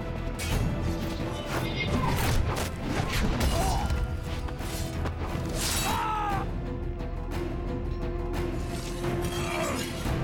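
Film score music running under fight sound effects, with several sharp clashing impacts spread through the first half.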